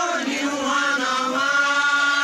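Chanted singing of a Holi festival song: the voice glides up and then holds one long steady note.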